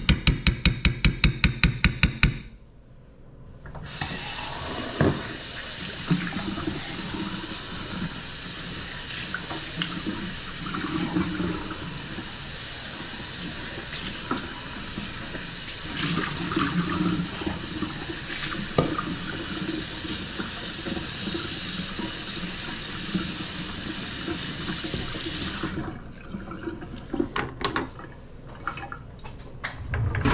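A kitchen faucet running into a stainless steel sink for about twenty seconds, with a few small knocks of things handled under the water, then shut off. It is preceded by a rapid rattle of about two seconds and a brief lull.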